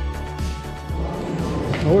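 Synthwave background music with a pulsing bass line and held synth notes; a man starts talking near the end.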